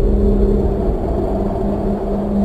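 A loud, deep low rumble over a steady hum, slowly easing off.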